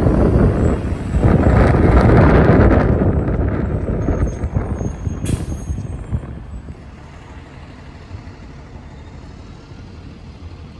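Electric trolley bus pulling away, a loud rush of road and running noise with a faint steady whine that fades over the first four seconds. A short sharp hiss of air about five seconds in.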